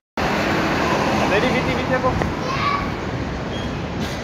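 Street noise: a steady rush of road traffic with faint distant voices. It cuts in abruptly after a brief silence at the start.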